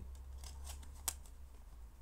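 A few light clicks and rustles of plastic DVD cases being handled, the sharpest click about a second in.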